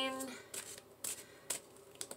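Three short, crisp rustles of tarot cards being handled, about half a second apart, after the tail of a woman's drawn-out word.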